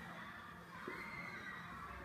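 Dry-erase marker squeaking faintly on a whiteboard as straight lines are drawn, with a wavering high-pitched squeak around a second in.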